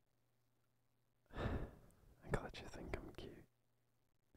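A man's voice close to the microphone: a breathy exhale a little over a second in, then about a second of soft, unintelligible whispering with several sharp clicks.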